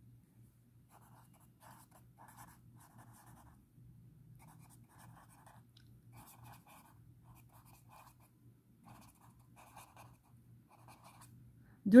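Pen writing on paper: a long run of faint, short scratching strokes as a line of words is written out by hand.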